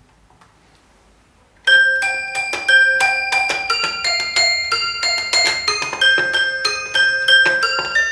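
Toy piano playing a run of ringing, overlapping notes that begin after about a second and a half of near silence. It is recorded on a microcassette recorder, played back at half speed and processed through a Red Panda Particle 2 granular delay.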